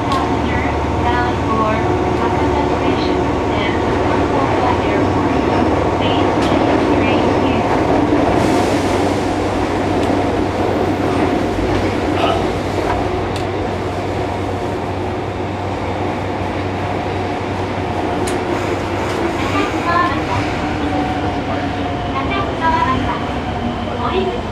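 Cabin sound of a Fukuoka City Subway 1000N series car running between stations: steady rumble of wheels and traction motors with the tones of its Hitachi three-level IGBT-VVVF inverter, easing off a little in the second half. Voices are heard over it.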